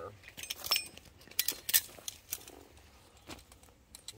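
Scattered light metallic clinks and rattles of a ratchet strap's hook and ratchet being handled.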